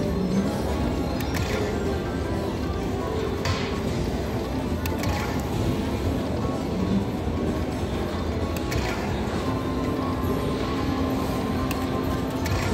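Aristocrat Lightning Link Tiki Fire slot machine playing its bonus-round music during the hold-and-spin free spins, with a few short clicks as the reels stop.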